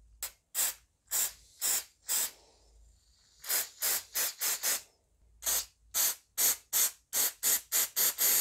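Aerosol can of CRC Mass Air Flow Sensor Cleaner sprayed onto a mass airflow sensor's hot wires in many short hissing bursts. The bursts come in runs, a few spaced about half a second apart early on, then quicker runs after brief pauses, washing debris off the sensing wires.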